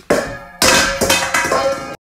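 A stainless steel mixing bowl clattering and ringing as dry ingredients are mixed in it. The sound starts sharply, gets louder about half a second in and cuts off abruptly.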